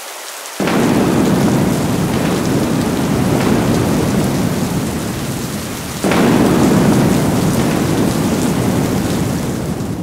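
Added thunderstorm sound effect: steady rain with two rolls of thunder, the first about half a second in and the second about six seconds in, each fading slowly.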